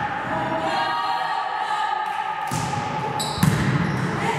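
Young players' voices chanting together in a reverberant sports hall, then a sharp slap of a volleyball being struck about three and a half seconds in.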